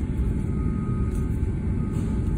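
Steady low rumble of a car cabin with the engine running.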